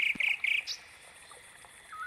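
Night chorus by water: three short trilled chirps in the first half second, then a faint steady high hum of insects, and a short whistled call near the end.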